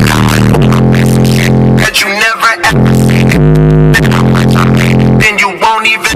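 A hip-hop track with a deep sustained synth bass plays loud on a car audio system with Audio Pipe bullet tweeters and 12-inch subwoofers, heard inside the cabin. Short vocal phrases come in about two seconds in and again near the end.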